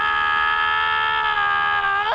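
A man screaming in pain in one long cry held at a steady pitch.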